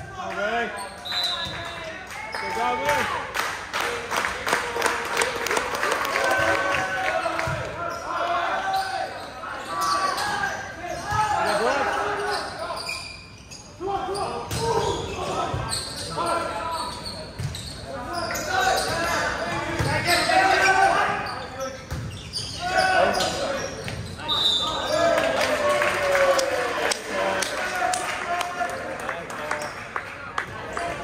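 Players and spectators shouting and talking in a large gym during a volleyball rally, with repeated thuds of the ball being struck and bounced.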